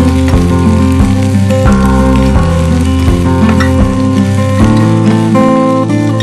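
Shredded cabbage and carrot sizzling in a hot pan as they are stir-fried and turned with a spatula, under background music whose notes change every second or so.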